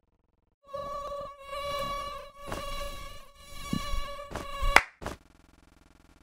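Mosquito whine, a steady high buzzing tone starting about a second in, with several sharp hits over it. The buzz cuts off at the loudest hit near the end, leaving a faint hum.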